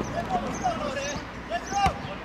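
Players calling out across the pitch, then a single sharp thud of a football being kicked near the end, the loudest sound.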